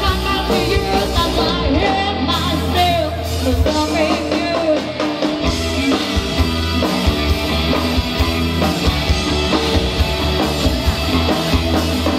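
A live rock band plays: a female singer over electric guitar and a drum kit with a steady beat. The singing falls away about halfway through, leaving the guitar and drums.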